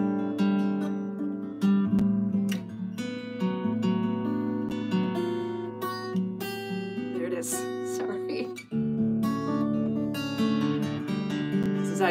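Black cutaway acoustic guitar strummed in ringing chords, with a change to a new chord about two-thirds of the way through.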